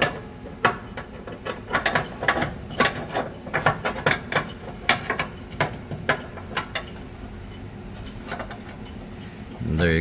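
Irregular metal clicks and clinks as a bolt and steel airbag bracket are worked and fished into place against a truck frame, thickest in the first seven seconds, then quieter.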